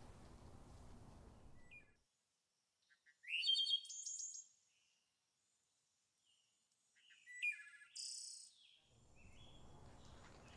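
Small birds chirping, in two short bouts of high, quick calls and trills: one about three seconds in and another about seven seconds in. Faint steady outdoor background noise at the start and near the end.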